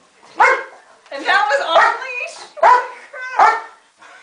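German Shepherd protection dog barking repeatedly, about five barks spaced roughly a second apart, after letting go of the bite pillow.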